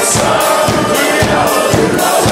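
Live wedding band playing a Ukrainian folk song with group singing over a steady beat, and guests clapping along in time.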